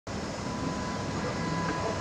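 Diesel engines of parked fire apparatus running, a steady low rumble with a faint steady high whine over it.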